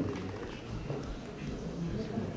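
Low, indistinct voices of people talking casually in a meeting hall, with no clear words.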